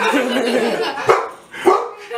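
A pet dog barking twice, a little over a second in, the barks about half a second apart.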